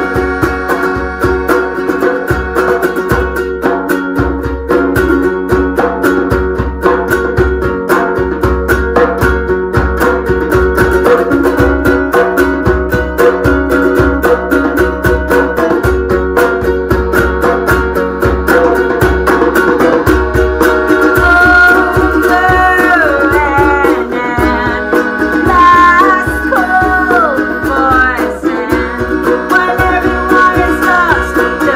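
Small acoustic band playing an up-tempo ukulele cover: two ukuleles strummed steadily over a hand-drum beat, with a melodica. About twenty seconds in, a higher melody line with sliding notes comes in over the strumming.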